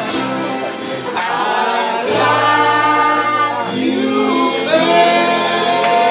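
Pop duet sung over a backing track through a PA, with long held, gliding notes.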